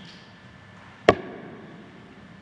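A single sharp knock about a second in, with a short ring-out, as a hand lands on the wooden lectern close to the microphones.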